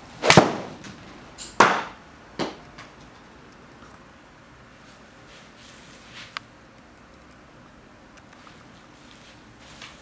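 A golf iron, a Cleveland CG16 Tour 7-iron, strikes a ball off a hitting mat with one sharp crack into a simulator screen. Two further knocks follow, about a second and two seconds later, the second fainter.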